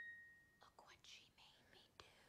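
A single ringing chime note fades out over the first half second. Faint, breathy whispering follows.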